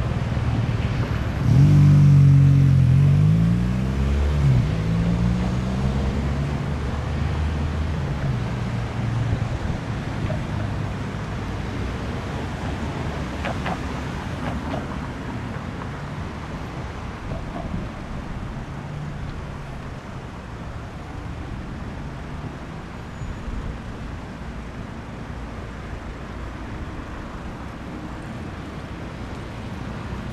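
A motor engine drone, loudest a couple of seconds in, where its pitch slides up and down, then fading slowly into a steady low hum of traffic.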